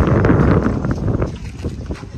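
Wind buffeting the phone's microphone: a heavy low rumble that is loudest for the first second or so and then eases off.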